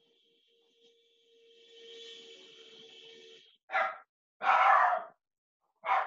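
Short non-word vocal sounds, three breathy bursts of about half a second each in the second half. Before them, a faint steady tone with a low hiss.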